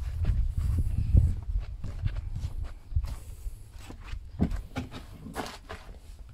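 Footsteps and handling noise from someone walking, with a low rumble over the first two seconds, then quieter, scattered clicks and knocks.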